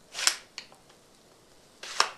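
Small wooden repeating slingshot crossbow (rubber-band-powered arrow shooter) shooting twice, about a second and a half apart: each shot a short sharp snap with a brief whoosh, followed by a faint click.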